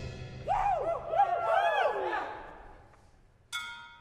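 A steel drum band's last chord ringing out and dying away, joined about half a second in by several people whooping for a second or two. Near the end a single note is struck and rings briefly.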